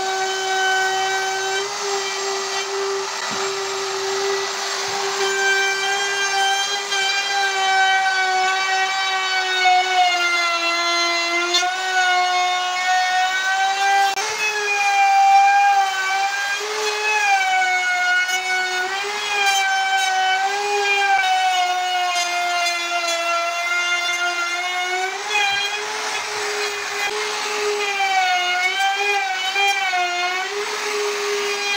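Electric wood router running at high speed as its bit trims the edges of plywood cabinet panels: a steady high whine whose pitch sags and recovers again and again as the cutter bites into the wood.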